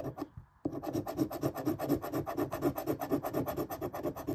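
A coin scraping the scratch-off coating off a lottery ticket in rapid back-and-forth strokes, with a brief pause just after the start.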